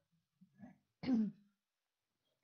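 A woman clearing her throat once, about a second in, after a couple of faint small throat sounds.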